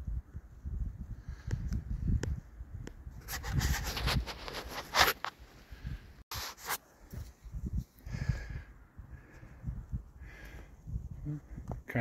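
A hiker's snowshoe footsteps on snow: irregular low thuds with scraping, rubbing noises, a cluster of them a few seconds in.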